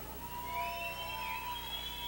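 Several faint, high whistle-like tones, overlapping and sliding up and down in pitch, after the music has died away.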